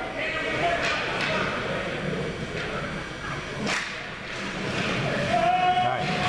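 Hockey-rink crowd noise: spectators talking and calling out, with two sharp knocks, about a second in and just before four seconds, from play on the ice.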